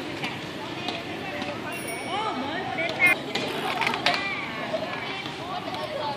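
Small child's bicycle with training wheels rolling over brick paving, a steady mechanical rattle with a couple of sharper knocks around the middle. Voices are heard over it.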